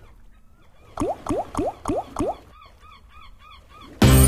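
Online slot machine game sound effects: five short rising chirps about a quarter second apart, then four or five fainter, higher blips.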